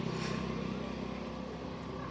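A motor vehicle engine running steadily, a low hum that sets in sharply and holds level.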